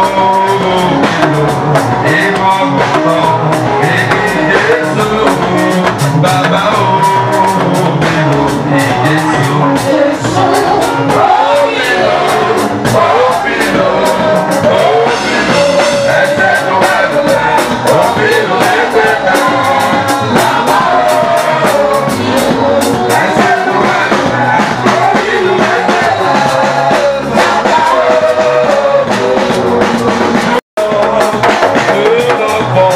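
Live band music with a man singing into a microphone over a drum kit and cymbals, with a steady beat.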